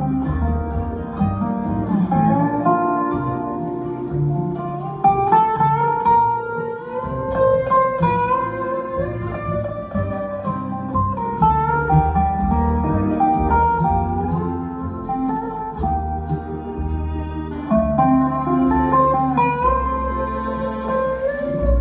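Live bluegrass band playing an instrumental break: fiddle, mandolin, upright bass, acoustic guitar and a resonator guitar (dobro), with sliding notes in the lead line over a steady bass.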